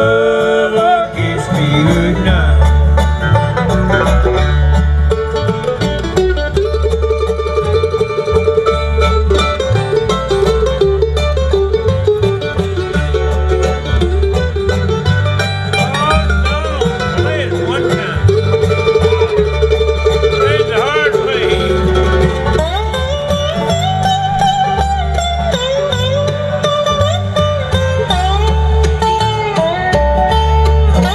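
Live bluegrass band playing an instrumental break between sung verses: banjo, mandolin, dobro, acoustic guitar and upright bass, the bass keeping a steady beat under the picked melody.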